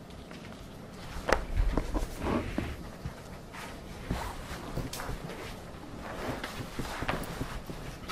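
Handling noise close to the microphone: irregular rustling and clicks from a sheet of paper and an object shifted in the hand, with low thumps about a second and a half in.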